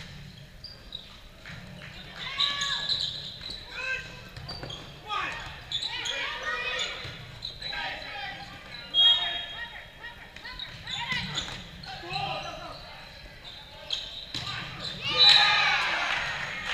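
Volleyball rally in a large gym: players' voices calling and shouting throughout, with sharp smacks of the ball being hit, the loudest about nine seconds in and again near the end.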